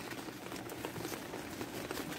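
Light rain pattering softly and steadily.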